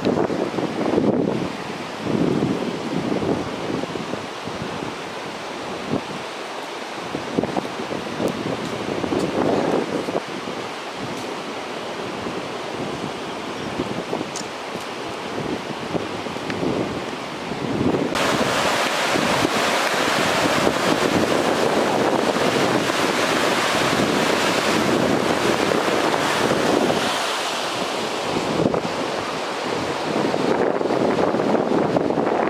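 Wind buffeting the microphone outdoors: a steady rushing noise with soft gusts, which turns suddenly louder a little past halfway and stays that way.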